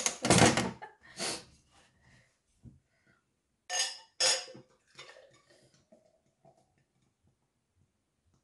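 A loud burst of noise right at the start, then a green glass beer bottle clinking twice against the rim of a stemmed glass about four seconds in as the beer is poured, followed by faint small sounds of the pour.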